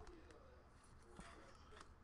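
Near silence in a small room, with a few faint clicks of trading cards being handled.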